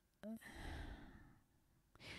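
A woman's faint sigh close to the microphone: a brief voiced sound, then a breathy exhale of about a second.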